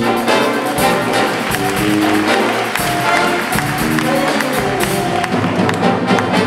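Student big-band jazz ensemble playing a chart: saxophones, trombones and trumpets over a rhythm section of drums, bass, guitar and piano, with drum and cymbal hits keeping time.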